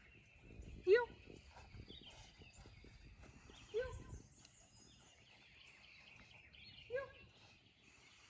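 A woman giving a dog short spoken commands three times, about a second in, near four seconds and near seven seconds. Between them is quiet outdoor ambience with a faint steady high-pitched drone.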